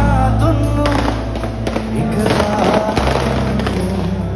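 A live band playing loudly through a PA, with heavy bass, repeated sharp drum hits and a voice singing over it, heard from within the audience.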